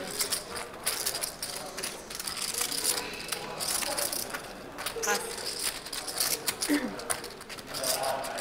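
Poker chips clicking and rattling as players handle them at the table: an irregular run of small, sharp clicks, with faint table chatter.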